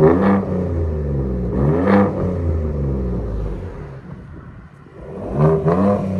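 2021 Ford F-150's 3.5L EcoBoost twin-turbo V6 revved through an X-pipe and straight-pipe dual exhaust: quick blips at the start and about two seconds in, each falling back to idle. It quietens briefly, then comes a double rev near the end.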